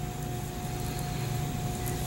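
Steady room hum with a faint, thin, steady tone above it; no distinct strokes stand out.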